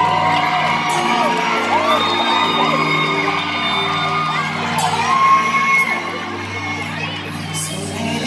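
A live band holds sustained chords under a steady bass while audience members whoop and scream in high, drawn-out cries.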